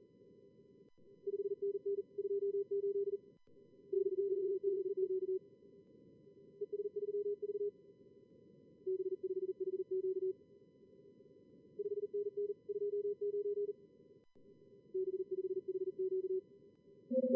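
Morse code (CW) from a contest logger's practice simulator: fast keyed low-pitched tones in groups every second or two, over a steady hiss of simulated receiver noise.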